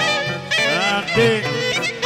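Greek folk dance music from a live recording, led by a clarinet. The clarinet plays sliding, bending phrases over a band accompaniment.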